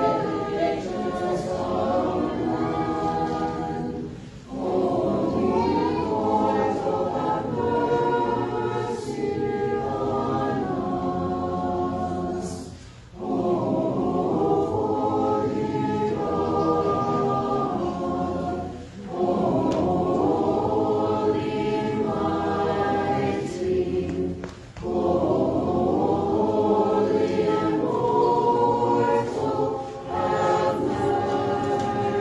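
Church choir singing an Orthodox liturgical hymn a cappella, in phrases of several voices with short breaks between them, about four times.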